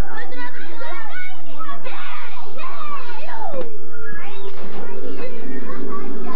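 Several children's voices yelling and calling over one another in rowdy play, with music underneath; steady held notes of the music come through clearly from about four seconds in.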